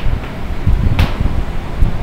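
Wind buffeting the microphone, a loud low rumble, with one sharp tap about a second in.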